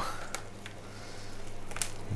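Faint rustling and two small clicks from gloved hands handling an orchid's roots and bits of potting media, over a low steady hum.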